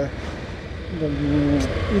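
Steady low rumble of a motorbike ride, engine and wind on the rider's microphone. About a second in, the rider's voice comes in with a drawn-out held sound that runs for most of a second.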